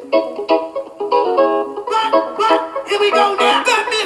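A lounge music track playing through the Samsung Galaxy Tab S5e's built-in speakers with Dolby Atmos switched off, with little bass.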